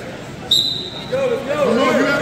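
Referee's whistle: one short, steady, high-pitched blast about half a second in, signalling the start of the wrestling bout, followed by voices calling out in the gym.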